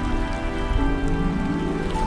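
Slow ambient meditation music with sustained low held notes, layered over a steady rain sound.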